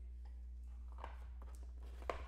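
Quiet room tone: a steady low hum with a few faint, short clicks.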